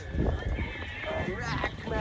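Voices of several people talking and calling out close by, over a murmur of a crowd.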